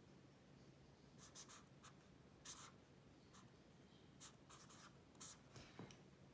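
Faint scratching of a felt-tip pen writing on lined notebook paper: a series of short, separate strokes as a few characters are written.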